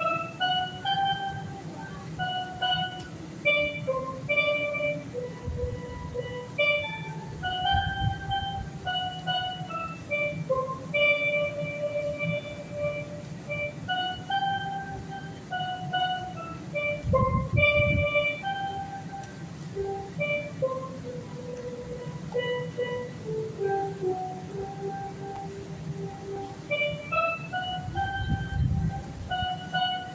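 Steelpan playing a slow, hymn-like melody of single held notes, over a low rumble that swells twice.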